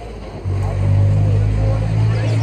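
Setra coach's diesel engine idling with a steady low hum that swells back up about half a second in, with faint voices over it.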